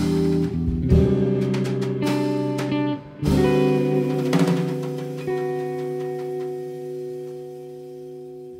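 Guitar and drum kit duo playing a slow jazz ballad: guitar chords over cymbal and drum strokes, with a loud stroke about three seconds in, then a held guitar chord left ringing and slowly fading.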